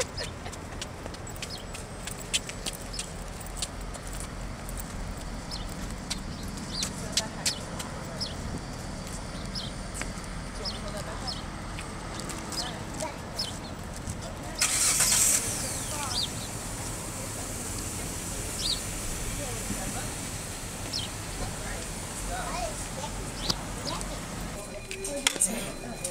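A vehicle engine running steadily in a parking lot, with scattered light clicks and a brief loud hiss about halfway through. The engine hum stops abruptly near the end.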